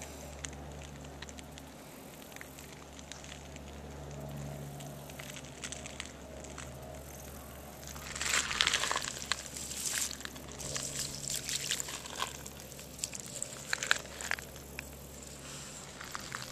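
Quiet outdoor background with a steady low hum, then irregular crackling and rustling from about halfway through, loudest just after the halfway point.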